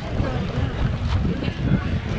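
Wind buffeting the camera's microphone outdoors: a loud, gusty low rumble, with faint voices of people nearby underneath.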